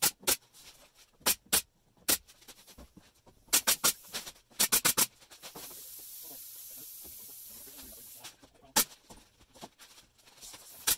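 Pneumatic brad nailer firing brads into a luan plywood skin: sharp shots, single ones near the start, then two quick runs of about four shots, and one more near the end. Between the runs there is a steady high hiss of compressed air for about three seconds.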